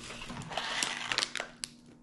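Plastic snack packaging crinkling and rustling as packets are handled and lifted out of a cardboard box, with a few sharp crackles, fading near the end.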